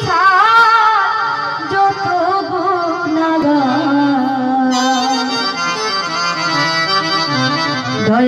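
A woman singing a Bengali Baul bichched (separation) folk song live into a microphone, with instrumental accompaniment. She holds long, wavering notes.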